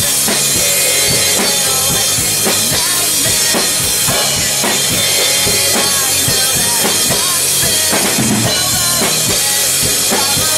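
Acoustic drum kit played hard and without a break: bass drum and snare keeping a fast rock beat, with cymbal crashes. It is played along with the band's recording of a pop-punk song.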